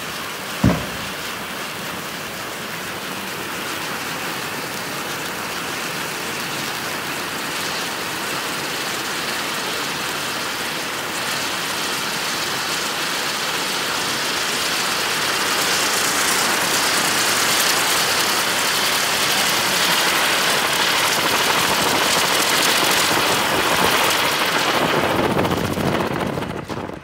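Iron Man Pyro Engine ground firework spraying sparks with a steady rushing hiss. The hiss grows louder through the second half, and there is one sharp pop about a second in.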